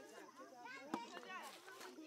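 A single sharp click about a second in as a flake comes off a stone being knapped by hand, over the chatter of onlookers.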